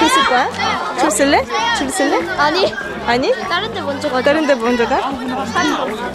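Many children's high-pitched voices chattering and calling out at once, overlapping without a break.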